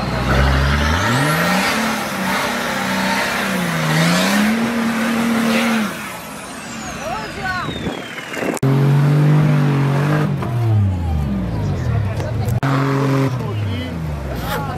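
A 4x4 off-road vehicle's engine revving hard under load on a steep dirt climb, its pitch rising and falling several times. About eight and a half seconds in, a sharp break gives way to the engine running at a steady high rev.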